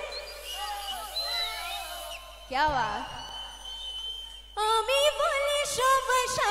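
Scattered voices, then the live stage band's music starts loudly about four and a half seconds in, with sustained keyboard-like notes.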